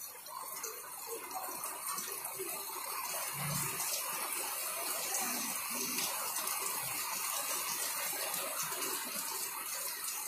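Muddy floodwater flowing fast over a street in heavy rain, a steady rushing noise.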